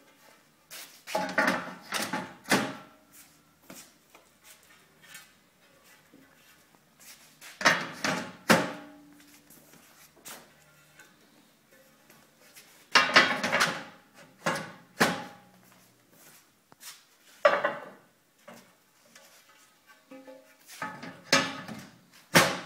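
Terra cotta rainscreen panels being set into the K20 rail system one after another: each placement is a short clatter of knocks and scrapes with a brief ceramic ring, about five times with a few seconds of quiet between.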